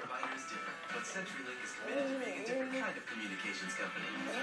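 Television playing in the background: music with voices speaking over it, a little past halfway through.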